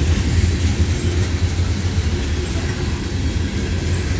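Loaded coal hopper cars of a freight train rolling past close by: a steady low rumble of steel wheels on the rails.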